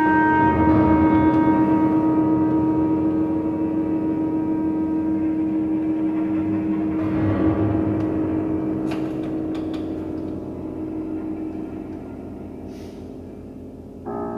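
Contemporary chamber music for clarinet, cello and prepared piano in a slow, dark passage: one long held note over low, rumbling, gong-like resonances, fading slowly, with a few faint clicks in the second half.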